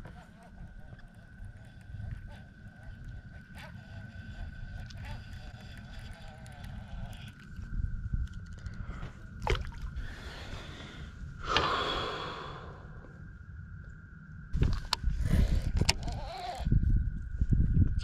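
Low wind rumble on the microphone with a faint steady high whine underneath, scattered small clicks of rod and reel handling, and a heavy exhaled breath about ten seconds in.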